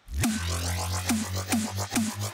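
Dubstep drop played back from the mix: a distorted, growling NI Massive synth bass over a steady deep sub bass. Repeated falling-pitch sweeps come about twice a second, and a fast frequency-shifter and tremolo wobble runs through the upper part of the sound.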